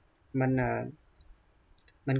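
A short spoken word of narration, then a couple of faint, brief computer-mouse clicks near the end over quiet room tone.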